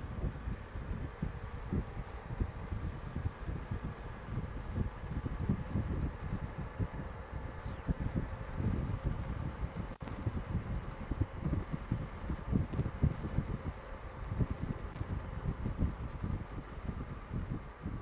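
Wind buffeting the microphone in uneven gusts on a moving motorcycle, over the steady running and road noise of a Honda Gold Wing trike's flat-six engine at cruising speed.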